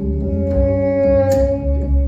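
Live soul-jazz band playing: one long held melodic note over a bass line, with a single drum-kit hit about two-thirds of the way through.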